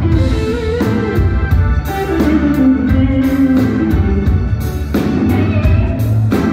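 Live blues band playing a song: electric guitar and organ over bass guitar and a drum kit.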